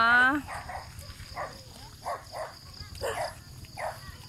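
A dog barking in the distance, about five short barks spaced irregularly, over a steady high chirring of insects. A woman's voice trails off at the very start.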